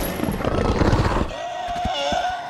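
Film soundtrack mix of a charging reek's roar and effects over orchestral score. A little over a second in, the dense rumble drops away to a held, higher tone.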